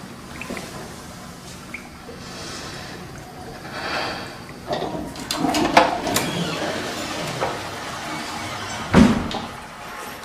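Tap water running into a ceramic washbasin and splashing over hands, with scattered small clicks, and one heavy thump near the end.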